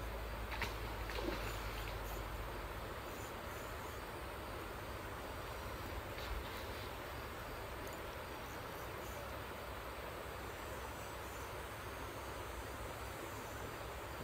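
Steady rush of flowing river water with insects buzzing faintly in the background, and a few light knocks near the start and about six seconds in.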